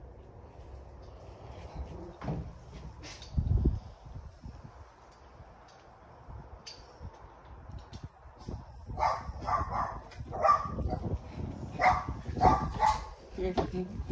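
Dog barking in repeated short calls through the second half, after a quieter stretch of low handling noise with one dull thump a few seconds in.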